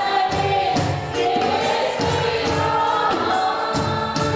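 A woman singing a gospel worship song into a microphone through the PA, with violin and electronic keyboard accompaniment and a steady beat.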